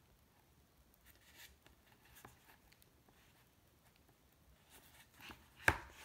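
Faint handling of a cardboard board book with finger puppets: scattered soft rustles and light taps, then one sharp click near the end.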